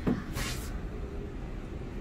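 A woman coughs once, a short breathy burst about half a second in, over a steady low background rumble.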